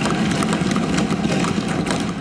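Assembly members thumping their desks in applause, a dense, continuous clatter of many hands at once, in approval of an announcement.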